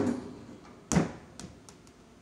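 A small basketball knocking against an arcade basketball hoop game: two sharp knocks about a second apart, the second the louder, then a few lighter taps as the ball comes back down the ramp.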